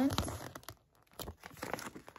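Paper instruction leaflet being handled and unfolded in the hands: soft crinkling paper rustles, broken by a short quiet pause about a second in.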